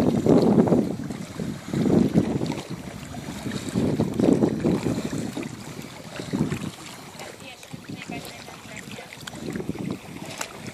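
Water splashing and sloshing from swimming, coming in surges about every two seconds, with wind on the microphone.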